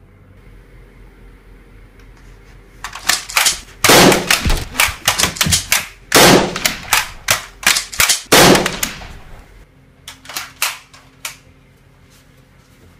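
Gunshot sound effects for a film shootout. Rapid shots begin about three seconds in, with three louder, deeper blasts among them. The firing tails off into a few single shots near the end.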